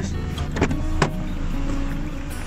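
Car door being opened from inside: the interior handle is pulled and the latch releases with two sharp clicks about half a second apart, over the low rumble of the car's running engine.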